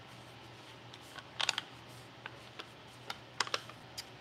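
Small plastic mixing cups being handled and set down on the work table, making scattered light clicks and taps, with a quick cluster about a second in and another near the end.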